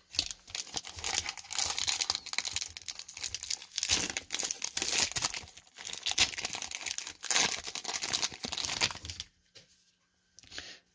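Wrapper of a 1994 Topps Series 2 baseball card pack being torn open and crinkled by hand, a crackling rustle with a few brief lulls that stops shortly before the end.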